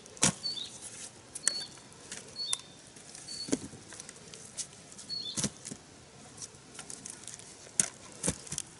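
Cassava roots being set down one by one into a woven basket: about five dull knocks a second or two apart, with light rustling of roots and dry stalks between them. A bird chirps with short high notes several times.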